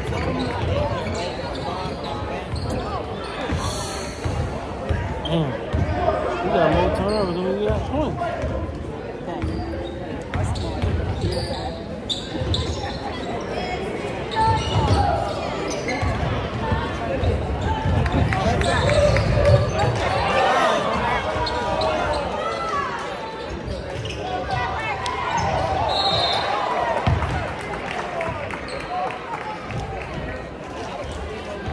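A basketball being dribbled and bouncing on a hardwood gym floor during a game, against steady chatter from spectators, echoing in a large gymnasium.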